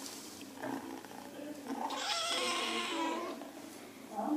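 A young kitten calling: a short sound before one second in, then one drawn-out cry about two seconds in that lasts a little over a second.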